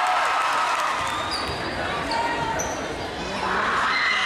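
A basketball crowd in a gym, many voices chattering and shouting at once. Several short, high squeaks come in the middle, typical of sneakers on a hardwood court.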